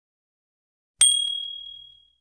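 A single high, bright bell ding about a second in, struck sharply and ringing out as it fades over about a second. It is the chime effect of an animated subscribe-button notification bell.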